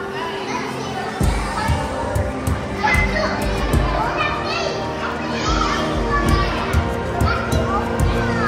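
Children's voices and chatter of a crowd over background music; a low beat comes in about a second in.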